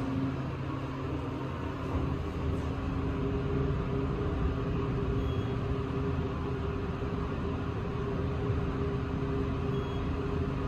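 Otis elevator car riding with the doors shut: a steady machine hum over a low rumble inside the cab.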